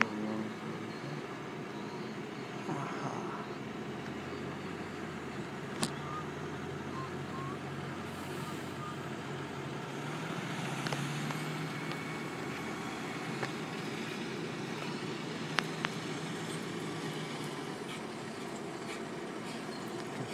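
Diesel truck engine running steadily, its pitch dipping and rising a little about halfway through, with two sharp clicks along the way.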